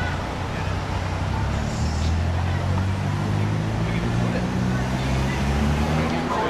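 A motor vehicle's engine running close by: a low, steady hum that steps up and down in pitch a few times. People are talking over the street noise.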